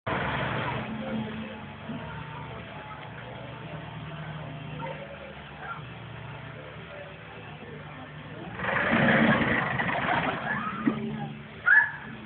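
Canal trip boat's motor running with a steady low hum as the boat comes out of the tunnel. About eight and a half seconds in, a louder spell of passengers' voices joins it, and a short rising vocal sound follows near the end.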